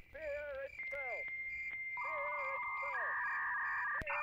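Electronic bleeps and tones: long steady held tones alternating with short warbling chirps and several quick falling swoops.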